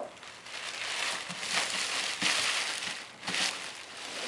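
A gift bag rustling and crinkling as a large boxed toy is pulled out of it, with a couple of light knocks from the box.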